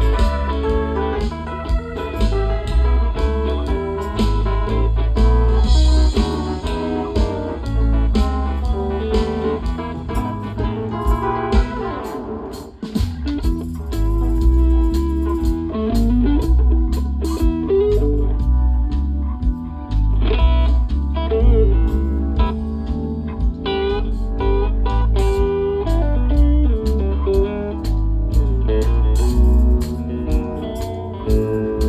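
Live blues-rock band playing an instrumental break, with an electric guitar lead bending notes over bass, drums and keyboards. The band drops away briefly near the middle, then comes straight back in.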